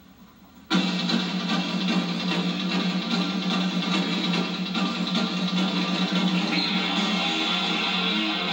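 Rock music with guitar, starting suddenly a little under a second in and playing on loud and steady.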